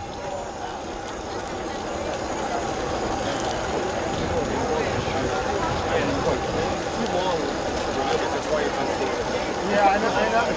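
Indistinct background chatter of spectators at the trackside, with no clear words, slowly growing a little louder.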